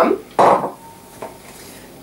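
A short clatter about half a second in as sugar is tipped from a container into the mixing bowl of a Thermomix TM31.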